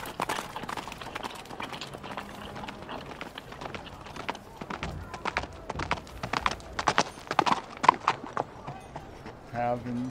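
Sound effect of horses' hooves clip-clopping as riders move off, an uneven run of hoof knocks through the whole stretch.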